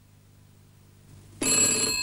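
A desk telephone's bell starts ringing suddenly about one and a half seconds in, after faint room tone.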